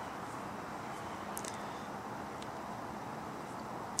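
Quiet outdoor ambience: a steady low hiss of background noise, with a couple of faint, very short high-pitched sounds about a second and a half and two and a half seconds in.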